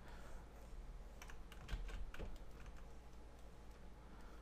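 A few faint, scattered clicks of a computer keyboard over a low steady hum.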